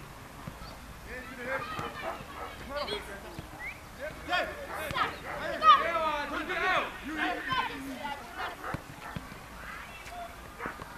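Footballers shouting and calling to one another during a practice game, the calls busiest and loudest in the middle.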